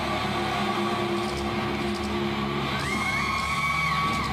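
Live heavy metal band with sustained, ringing guitar notes and crowd yelling and whooping. About three seconds in, a high held tone slides up and sustains.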